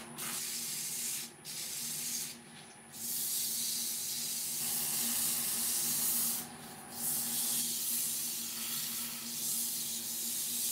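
Abrasive paper held by hand against a wooden base spinning on a woodturning lathe, giving a steady hiss that stops briefly three times as the paper is lifted off. Under it runs the lathe motor's steady hum.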